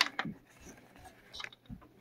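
Faint scattered clicks and rustles from a cut USB cable and its taped wires being handled on a desk, with a soft low thump near the end.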